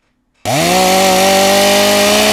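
Chainsaw running at full throttle, loud, starting suddenly about half a second in; its pitch climbs briefly and then holds steady.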